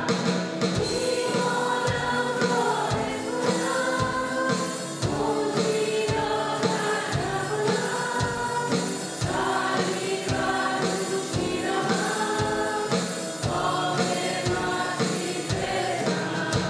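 Live Christian worship song sung in Persian: a woman and a man singing over acoustic guitar, electric guitar and a drum kit keeping a steady beat.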